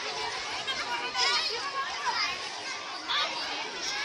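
Many children's voices chattering and calling out over one another at play, with no single clear speaker.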